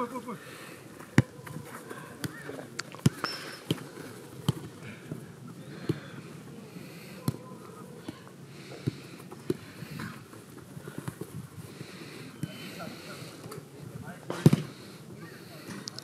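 A football being kicked and passed on artificial turf: scattered sharp thuds, the loudest a little before the end, with faint, distant calls from players.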